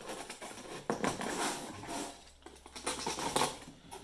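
Irregular scraping and rustling of a foam tile being picked at and pulled apart by hand to open a chasm hole, with the sharpest scrapes about a second in and again past three seconds.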